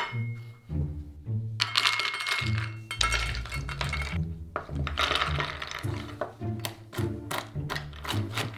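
Cashews poured into a small metal measuring cup with a clattering rattle, then tipped out onto a wooden cutting board with a second rattle. Near the end come quick sharp taps of a knife chopping the nuts on the wood, over background music with a steady bass line.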